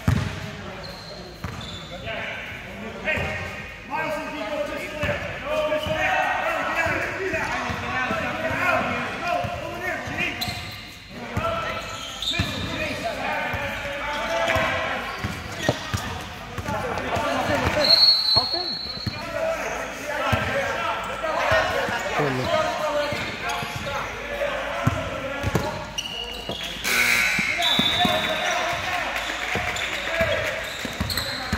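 A basketball being dribbled and bouncing on a gym floor during play, over steady background chatter from players and spectators, in a large gym.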